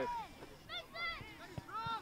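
Spectators shouting to players: a player's name is called out at the start, followed by more high, drawn-out calls about a second in and near the end.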